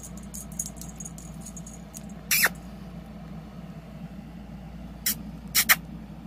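A kitten playing with a string toy on a fleece blanket: faint scratchy ticks, then a few short, sharp rustling or rattling noises, one about two seconds in and a quick cluster near the end, over a steady low hum.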